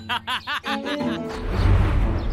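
A man's sly snicker, several short bursts of laughter over background music. Then, about a second and a half in, a swelling rush of noise with a low rumble.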